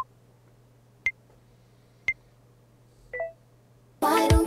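Countdown timer beeps, one short electronic beep about every second, four in all; the last beep is a little longer and lower.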